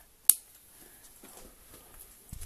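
Handling noise close to the microphone: one sharp click about a quarter second in, then faint rustling.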